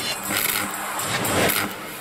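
Intro sound track of a channel logo animation: two rushing swells of noise over music, cutting off suddenly at the end.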